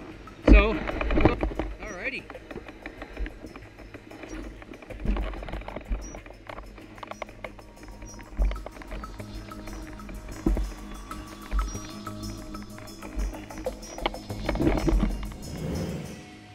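Irregular low thuds and knocks from a loaded touring bicycle being bumped over a makeshift plank-and-ladder crossing and up a rocky bank, heard through the bike's handlebar camera, under background music.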